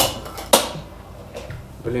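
A fingerboard clacking on top of a hollow box obstacle: two sharp clacks about half a second apart, the second louder, each with a short hollow ring-out.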